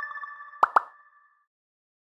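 Edited-in chime sound effect of an animated title card: a cluster of ringing chime tones with a quick run of ticks, two pops a little over half a second in, then the tones ring out and fade within about a second and a half.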